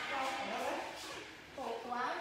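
A woman's voice talking, with the pitch rising and falling like ordinary speech.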